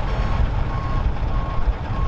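Truck reversing alarm beeping at an even pace, about three short single-tone beeps in two seconds, as a utility-body pickup towing an empty boat trailer backs down a boat ramp. A steady low rumble runs underneath.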